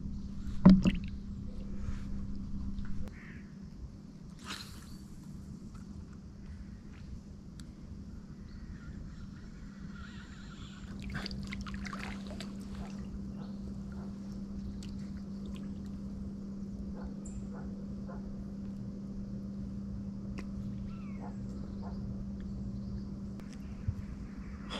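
Water sloshing faintly around a man wading waist-deep in a river, over a steady low hum, with a sharp knock just under a second in and scattered small clicks.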